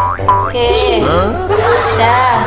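Cartoon 'boing' sound effects, quick rising springy twangs right at the start, over steady background music. They are followed by a child's laughing voice.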